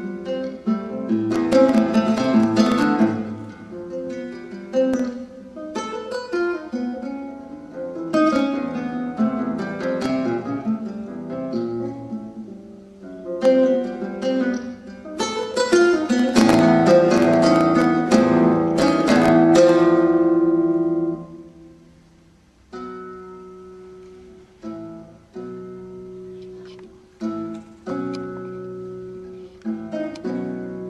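Solo classical guitar with nylon strings, played fingerstyle: quick plucked figures and chords, building about halfway through to a loud run of strummed chords that ring and then die away, followed by quieter, sparser notes.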